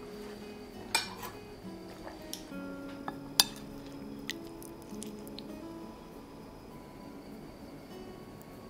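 Metal spoon clinking against a ceramic plate while food is scooped, with two sharp clinks about one and three and a half seconds in and a few lighter taps between, over soft background music.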